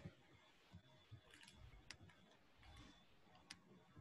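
Near silence with a handful of faint, sharp clicks scattered through it.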